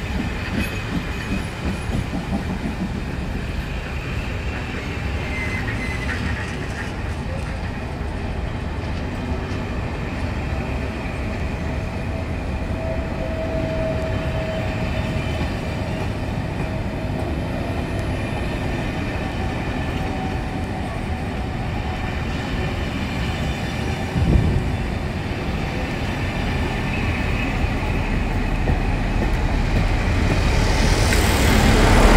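Passenger coaches of a departing train rolling past, a steady rumble of wheels on the rails, with a short thump about 24 seconds in. The rumble grows louder near the end as the tail-end diesel locomotive approaches.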